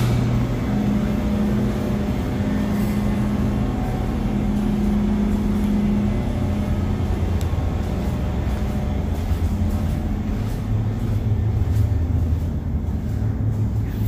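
Steady low mechanical hum of a building's ventilation system, with a faint tone that drops in and out several times.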